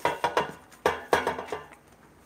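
Metal baking pan clanking against the rim of a stainless steel mixing bowl as roasted potatoes and sauce are scraped from the pan into the bowl: about six sharp metallic knocks with a brief ring, in the first second and a half.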